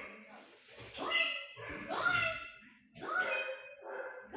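A dog whining in a series of short high-pitched cries, about one a second, each rising at its start.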